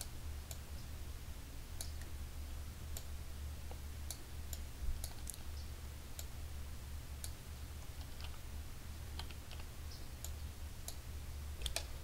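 Irregular, scattered sharp clicks of a computer mouse and keyboard in use, over a steady low hum.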